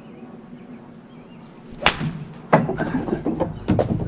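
A five iron striking a Vice Pro Soft golf ball off a hitting mat: one sharp crack a little under two seconds in. It is followed at once by a louder knock and a few more thuds over the next second.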